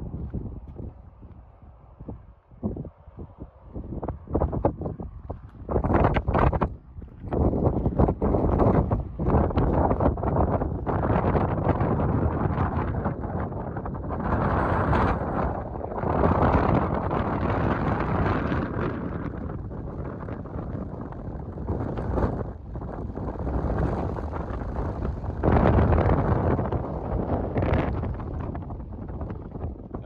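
Gusty wind buffeting the microphone: lighter for the first few seconds, then loud from about six seconds in, with repeated surges.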